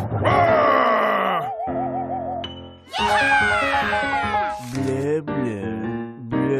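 Cartoon background music with comic sound effects: a wavering warble about one and a half seconds in, then a long falling glide about three seconds in.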